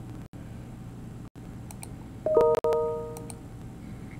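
A short chime of several steady tones, struck twice in quick succession about two seconds in and ringing out for about a second, over a steady low hum with a few faint clicks.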